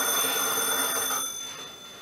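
A sustained high ringing tone made of several steady pitches, fading away about a second and a half in.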